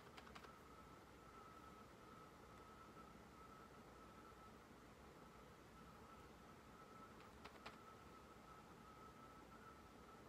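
Near silence: room tone with a faint steady high-pitched whine, and a few faint clicks of handling, once near the start and a couple of times about two-thirds of the way through.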